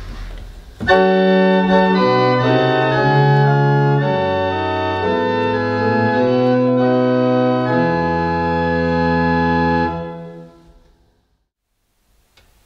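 Pipe organ with pneumatic action, a 1913 Eduard Vogt instrument, playing a short passage of sustained chords on its principal stops with a bass line under them. It starts about a second in, stops near ten seconds, and the sound dies away in the room.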